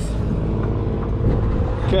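Heavy diesel truck using its engine brake (Jake brake) while slowing: a steady, low engine sound.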